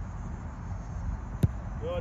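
One sharp thump of a foot kicking a soccer ball about one and a half seconds in, over a steady low rumble.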